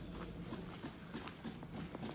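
Footsteps of a person walking on a tarmac road: a run of light, short taps.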